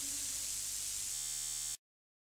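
Steady hiss of the recording's background noise left after the song ends, with a faint hum joining about a second in. It cuts off abruptly shortly before the end.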